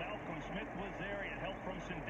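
Faint commentator speech from a TV football broadcast over steady stadium crowd noise.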